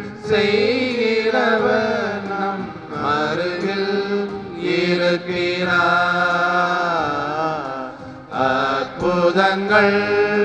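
A voice singing a slow Tamil devotional hymn in long, wavering held notes, phrase after phrase with short breaths between, over a steady low held tone.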